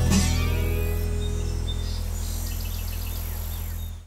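The last acoustic guitar chord of a country-style jingle rings out and slowly fades, with birds chirping faintly in the background.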